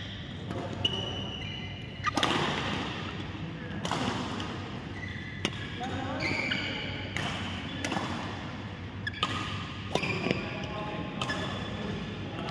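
Badminton rally: a string of sharp racket strikes on the shuttlecock at irregular intervals, with short high squeaks of court shoes on the synthetic floor between them.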